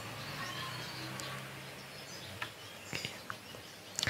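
Faint room noise with a low steady hum that fades about halfway through, and a few scattered soft clicks of a computer keyboard and mouse.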